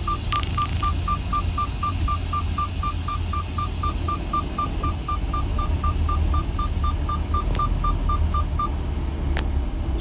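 Rapid electronic beeping: one short beep at a single steady pitch, about four times a second, that stops near the end. Under it runs a low steady rumble.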